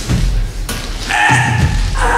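Two grapplers shifting their weight on a foam mat during a pin, with a thud about two-thirds of a second in, followed by a brief held voice-like sound near the middle.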